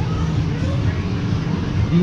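A steady low rumble with faint voices chattering in the background.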